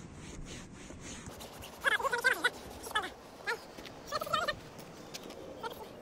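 Faint rubbing of a microfibre cloth wiped across a fabric car seat. About two seconds in it is broken by four short, warbling calls, which are the loudest sounds here.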